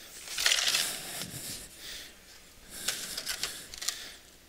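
Scraping and clatter from concrete retaining-wall blocks being handled: a scraping stretch in the first second, then a run of short knocks and clicks a little before the end.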